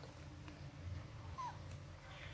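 Faint, short squeaks from a baby macaque, the clearest a little past halfway through, over a low steady hum.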